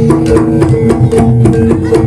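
Live kuda lumping accompaniment in gamelan style: struck keyed percussion plays a quick melody of short repeated notes over a lower line, driven by sharp drum strokes.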